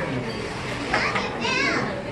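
Busy restaurant chatter with children's voices; a high-pitched voice rises and falls briefly in the second half, after a short knock about a second in.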